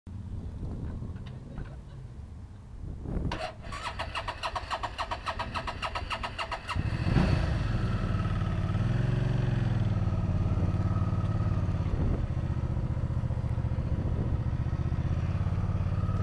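Motorcycle engine being cranked by its electric starter for about three seconds with a fast rhythmic chatter, then catching and settling into a steady idle, with one brief throttle blip a couple of seconds after it starts.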